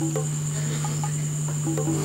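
Crickets chirring steadily in a high, unbroken band, over a low steady hum, with a few faint short musical notes.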